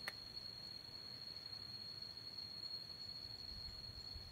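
A faint, steady high-pitched whine holding one pitch, over low background hiss.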